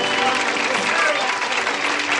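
Studio audience applauding, with the band's last notes dying away near the start.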